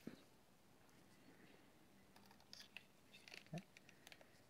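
Near silence with a few faint clicks and taps of the plastic drone body being handled and turned over, most of them in the second half.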